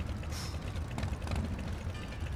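A steady low mechanical rumble with fast, fine ticking, and a brief hiss about a third of a second in.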